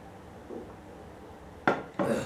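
Drinking from a ceramic mug: a faint sip about half a second in, then a single short, sharp clunk near the end as the mug is set down.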